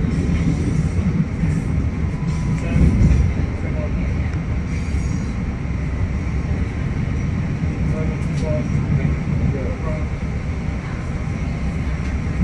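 LIRR Budd M3 electric multiple-unit train running out over the tracks and switches, a steady low rumble of wheels on rail. A few sharp clicks come as the wheels cross switch joints.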